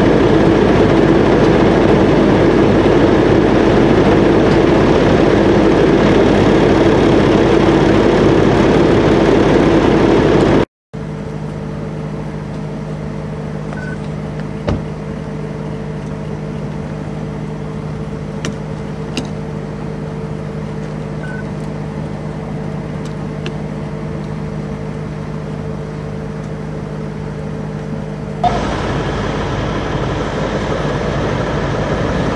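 Steady sound of vehicle engines idling, in three stretches split by abrupt cuts: loud at first, then quieter with a steady low drone and a few faint ticks, then louder again near the end.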